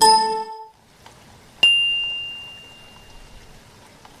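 End-screen sound effects for a like-and-subscribe animation. A short bright chime sounds at the start. About a second and a half later a sharp click is followed by a single high ding that rings out and fades over nearly two seconds.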